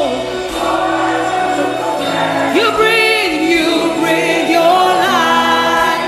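Live gospel worship song: a woman's lead vocal with vibrato over sustained instrumental accompaniment, with choir voices singing along.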